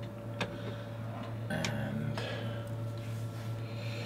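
A bench oscilloscope being switched on: a few light, scattered clicks over a steady low electrical hum and a faint steady higher tone.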